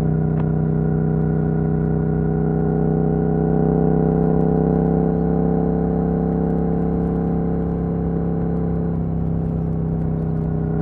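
Yamaha YZF-R7's 689 cc parallel-twin engine through an Akrapovic full carbon racing exhaust with the dB killer removed, running at a steady pitch while the bike cruises. It grows a little louder around the middle and eases slightly near the end.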